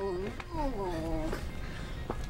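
A man's wordless, drawn-out vocal cry, a short sound and then a longer one sliding down in pitch, stopping about a second and a half in.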